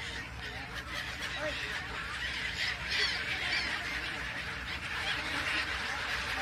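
A large flock of gulls calling over water, many harsh calls overlapping in a steady din that swells for a moment near the middle.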